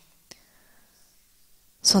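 Near silence in a pause between spoken phrases, broken by one faint click about a third of a second in; a woman's voice starts speaking again near the end.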